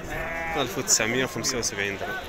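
Sheep bleating: one wavering bleat right at the start, among men talking.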